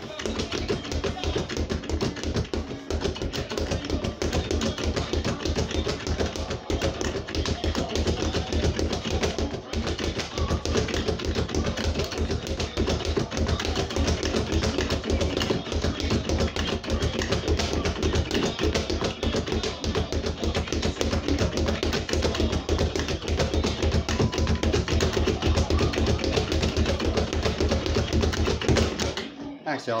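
Leather speed bag punched in a fast continuous rattle of strikes against its rebound board, with background music playing; the punching stops near the end.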